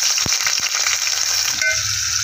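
Sliced onions and curry leaves sizzling in hot oil in a pan, a steady hiss with a couple of sharp clicks in the first second.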